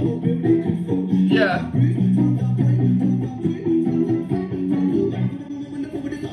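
Playback of a live street performance: guitar playing held low notes, with a voice over it and a short high sweep about a second and a half in.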